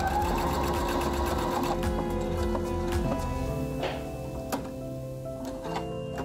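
Domestic sewing machine stitching through layers of terry towelling, running fast and steadily, then easing off about four seconds in to a few separate stitches.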